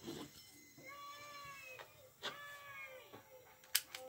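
A cat meowing twice, two drawn-out calls that fall away at the end. Between and after the calls come sharp clicks of LEGO plastic pieces being handled and pressed together, the loudest near the end.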